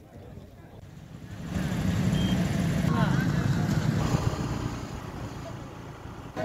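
A road vehicle passing close by on a highway: a low rumble sets in about a second and a half in, holds for a few seconds, then fades, with faint voices behind it.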